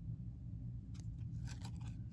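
Trading cards handled in the fingers, with a single faint click about a second in, then a few quick clicks and rustles of card stock near the end as the cards are slid apart.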